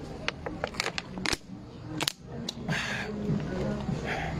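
A thin plastic water bottle crackling as it is gripped and squeezed while someone drinks from it: a string of sharp clicks and crinkles over the first two and a half seconds. Music plays in the background.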